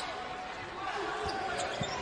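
Basketball dribbled on a hardwood court, a couple of low bounces in the second half, over the steady murmur of an arena crowd.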